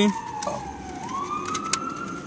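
A siren-like wailing tone that slides down in pitch, then rises again about halfway through.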